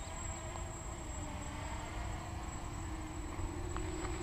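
Distant quadcopter's electric motors and propellers buzzing in a steady hover on a 4S battery, held at about 25% throttle, the pitch creeping up slightly. Wind rumbles on the microphone underneath.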